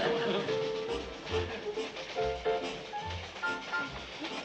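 Light jazzy background music with a held melody note that steps to higher notes, low bass notes about once a second and light drums.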